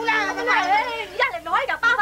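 Women's voices talking animatedly, high-pitched and exaggerated, with one voice drawn out near the start.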